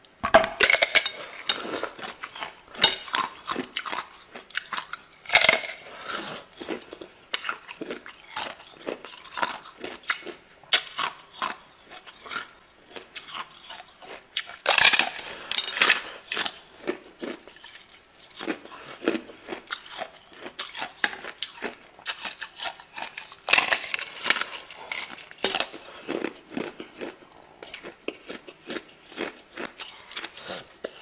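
Thin sheets of ice being bitten and chewed: a dense, irregular run of sharp cracks and crunches that starts suddenly, with a few louder bursts of snapping where fresh bites are taken.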